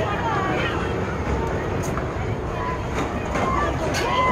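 Indistinct voices of people talking in the distance over a steady low rumble, with a few faint clicks.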